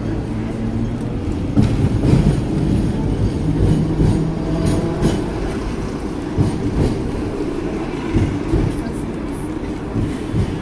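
Hong Kong double-decker tram running along its street rails, heard from on board: a steady rumble of wheels and motor with a short hum now and then. Irregular knocks come from the running gear on the track.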